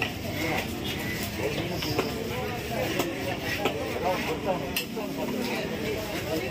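A heavy knife striking through fish onto a wooden chopping block, sharp knocks roughly once a second, as a small grouper is scored. Background voices run throughout.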